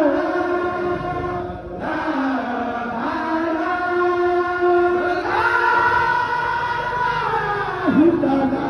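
A group of men chanting a devotional dhikr together in unison, drawing out long held notes. After a short break for breath about two seconds in, a single note is held from about five seconds in until near the end.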